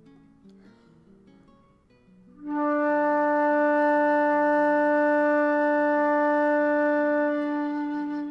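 Concert flute playing a long, steady low D, starting about two and a half seconds in and held evenly for about five and a half seconds with a full, rich tone. This is the starting note of a harmonics exercise, before it is overblown to the octave. Soft plucked guitar background music plays underneath.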